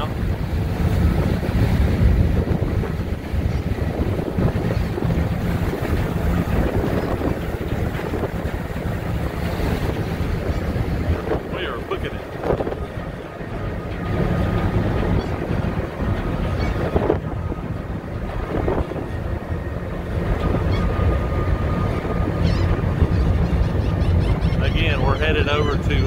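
Wind buffeting the microphone on the deck of a car ferry under way, over the steady low drone of the ferry's engines and the rush of its propeller wash.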